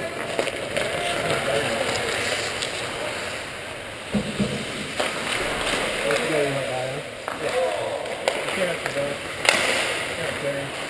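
Ice hockey play in an indoor rink: skate blades scraping and carving on the ice, with stick and puck clacks and several sharp knocks, the loudest near the end.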